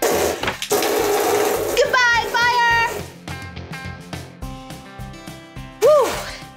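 A jet of water from a play fire-hose nozzle spraying in a loud, rushing hiss for about three seconds, with a short wavering pitched sound near its end, over background music.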